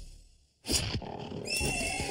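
Cartoon sound effect of a horse neighing, starting suddenly about two-thirds of a second in after a brief near-silent gap.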